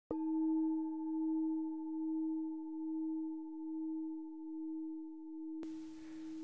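A singing bowl struck once, ringing on with a slow, even wavering in loudness as it gradually fades. Near the end a faint background hiss comes in under the still-sounding tone.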